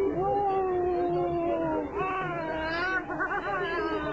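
A high voice making long drawn-out tones, one held for over a second, then bending up and down with a wavering stretch near the end.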